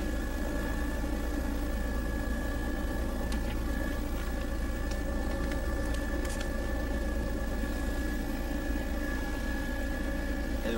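Steady drone of a light survey aircraft's engine heard from on board, unchanging in pitch and level.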